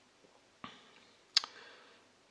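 Two short clicks, a soft one and then a sharper, louder one about 0.7 seconds later, each fading quickly.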